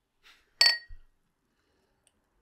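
Two drinking glasses clinked together once in a toast: a single sharp glass chink with a bright ring that dies away within about half a second.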